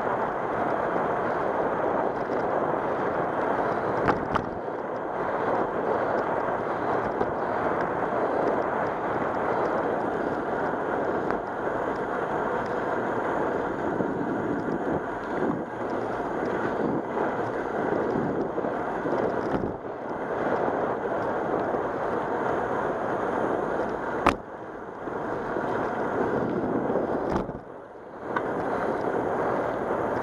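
Steady rushing of wind on a bicycle-mounted camera's microphone, mixed with tyre noise on the asphalt trail as the bike rolls along. A sharp click about four seconds in and another, louder one near the end.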